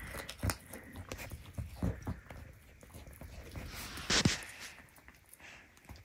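Nigerian Dwarf goat chewing a raw carrot, a run of irregular crunches with the loudest one about four seconds in, tailing off after that.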